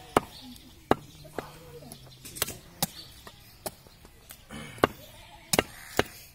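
Meat cleaver chopping goat meat on a wooden log chopping block: a series of sharp, separate chops, about two a second and unevenly spaced.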